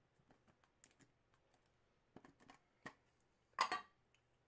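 Light clicks and taps of a clear plastic puck display cube being handled and turned over in the hands, with a louder short clatter near the end.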